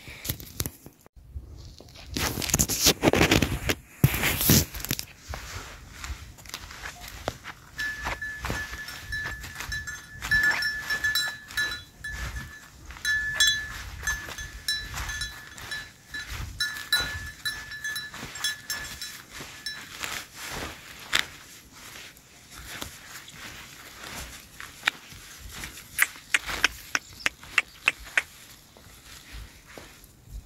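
Horses grazing at close range: many small crunches and clicks of grass being cropped and hooves on turf. A small bell, likely on one of the horses, tinkles on and off through the middle. Loud rushes of noise come near the start.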